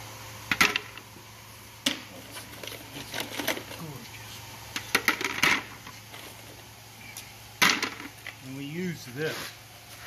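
Pieces of honeycomb calcite dropped by hand into a plastic bucket with a perforated insert, about five sharp knocks of stone on plastic spaced irregularly.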